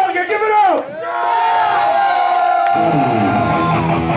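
Live heavy metal band with amplified electric guitar: held notes swoop down in pitch about a second in, high sustained notes ring on, and the low bass and drums come back in near three seconds in, over crowd noise.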